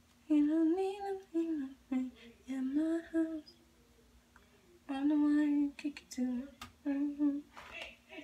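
A woman humming a tune to herself in two short phrases with a pause between them.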